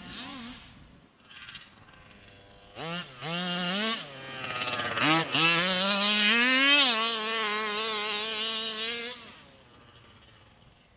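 Small two-stroke petrol engine of a 1/5-scale RC buggy, Baja type, revving hard. There is a short throttle burst about three seconds in, then a brief lift. From about five seconds the revs climb to a high, steady pitch that holds until about nine seconds, as the buggy passes close, then fades as it moves away.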